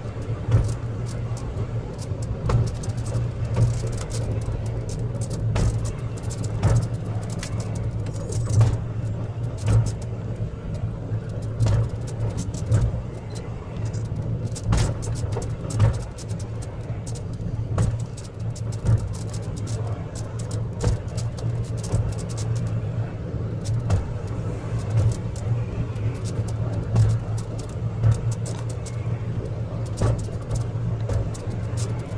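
Funicular car running along its track: a steady low hum with frequent irregular clicks and knocks.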